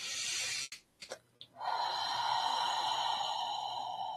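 A woman taking an audible deep breath: a short breath in, then a long, steady breath out lasting about three seconds.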